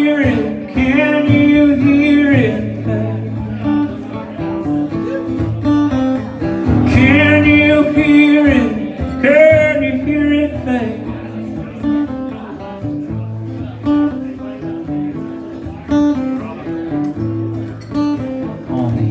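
Solo steel-string acoustic guitar strummed in a steady rhythm through changing chords, with a man singing drawn-out lines over it twice, at the start and again about seven to ten seconds in.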